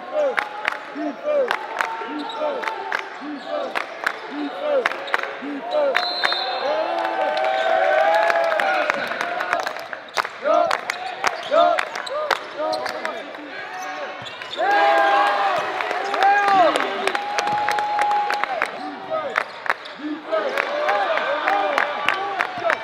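Live basketball play on a hardwood gym court: sneakers squeak again and again in short rising-and-falling chirps, and a basketball is dribbled with sharp bounces.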